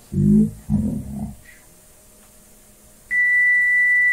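Two short low-pitched bursts in the first second or so. Then, about three seconds in, a steady pure test tone of about 2 kHz starts abruptly: a calibration tape played back on a Sony TC-765 reel-to-reel deck at 3¾ inches per second, its pitch a touch under 2 kHz because the tape speed is close but not yet exactly set.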